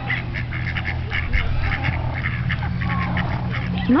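Ducks quacking over and over, many short calls close together, over a steady low hum.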